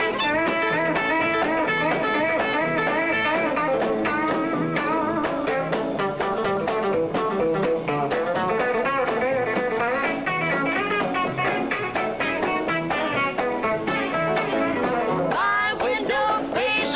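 Fast lead electric guitar picking quick runs in an up-tempo country instrumental, backed by a band with drums.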